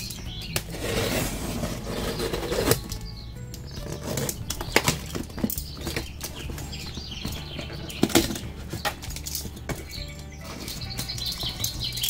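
A box cutter slicing through packing tape on a cardboard shipping box, a long rasping cut early on. Then scrapes, knocks and cardboard rustling as the box flaps are pried and pulled open.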